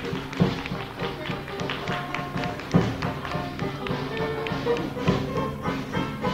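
A traditional New Orleans jazz band recording, with horns playing over a steady beat of drums and bass and sharp percussive accents every couple of seconds.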